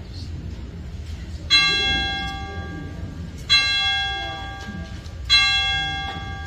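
A bell struck three times, about two seconds apart, each stroke ringing out and fading.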